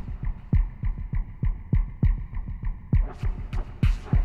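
Suspense background score: deep, heartbeat-like drum thumps pulsing about three times a second over a low, steady hum.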